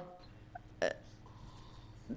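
A pause in a man's speech into a microphone: quiet room tone with one short click-like noise a little before the middle.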